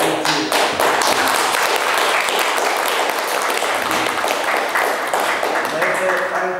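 Small audience applauding: dense clapping that starts suddenly and thins out near the end.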